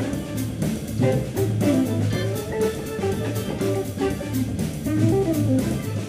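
Organ trio playing live with no vocals: electric guitar and Hammond organ over a drum kit, with a steady beat of cymbal strokes and a strong low bass line.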